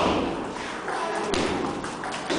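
Table tennis rally: the ball knocks sharply off the rackets and table, the loudest knock right at the start and another just over a second later, with faint voices in the hall behind.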